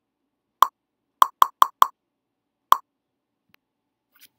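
Six short, hollow pops over silence: one, then a quick run of four, then a single last one.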